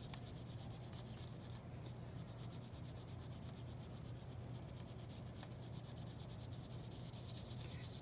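A gray pastel stick rubbing back and forth on paper as an area is shaded in, a faint, steady scratchy rubbing.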